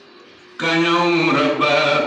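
A man's voice singing a Sindhi naat, a devotional chant, into a microphone. It comes in about half a second in, after a short pause, with long held notes.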